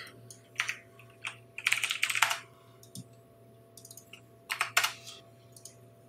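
Typing on a computer keyboard: irregular short runs of key clicks with pauses between, the busiest run about two seconds in.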